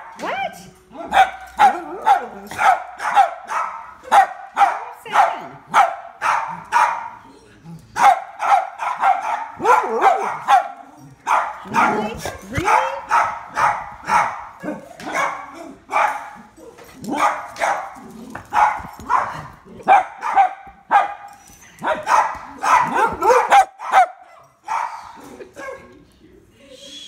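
Springer spaniel barking over and over, two or three sharp barks a second in long runs broken by short pauses.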